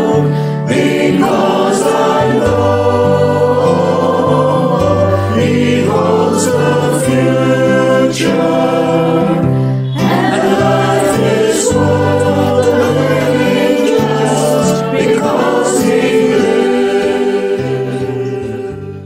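Choir singing a hymn with instrumental accompaniment, the voices held on long notes over a bass line that moves to a new note every second or two.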